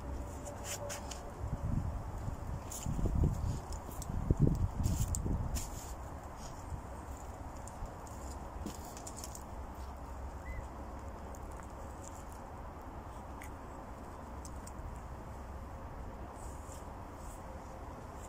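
Crumbly rotted stump wood being handled and broken apart: scattered crackles and a few soft knocks in the first six seconds. After that only a steady low rumble, like wind on the microphone, remains.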